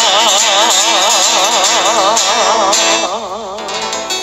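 A male singer holding the song's final long note with a wide, even vibrato over the backing music. About three seconds in the note drops away and the music fades out.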